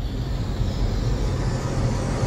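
Cinematic intro sound design: a swelling whoosh of noise that builds and brightens over a steady low drone.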